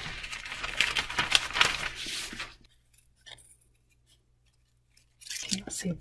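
Scissors cutting through green painter's tape stuck on parchment paper: a quick run of crisp snips and paper rustle that stops about two and a half seconds in.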